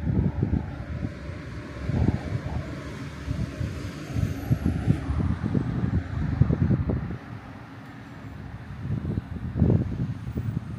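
A road vehicle passing: its noise swells, then fades about seven seconds in, with a high whine that falls in pitch around halfway. Low, irregular rumbling runs underneath.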